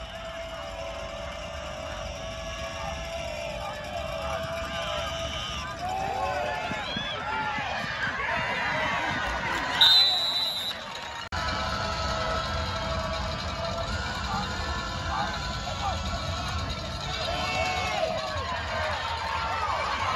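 Football crowd and sideline noise: many voices shouting and cheering over one another. About halfway through, a referee's whistle gives one short, loud, shrill blast.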